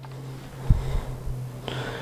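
A steady low hum, a single dull thump just under a second in, and a short breath near the end.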